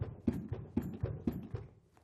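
Philips HeartStart AED in CPR mode, clicking a steady beat of about four clicks a second that fades out near the end.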